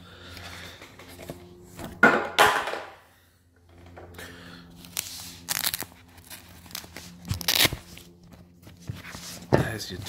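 Handling noise from a fabric tool pouch being moved and opened, with three short rasping sounds spread through.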